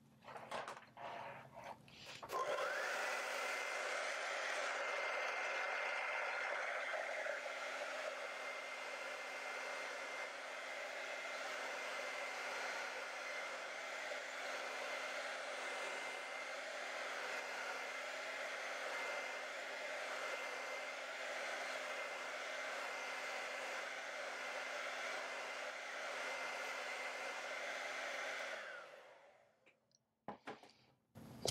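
Handheld hair dryer running steadily to dry wet acrylic paint, a rush of air with a thin steady whine. It switches on about two and a half seconds in, after a few faint knocks, and cuts off just before the end.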